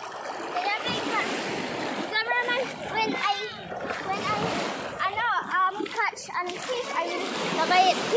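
Shallow seawater splashing around a child's legs as he wades and scoops with a plastic bucket. Children's high voices call out over the splashing through much of it, loudest near the end.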